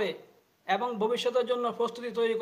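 A man speaking in a narrating monologue, with a brief pause about half a second in.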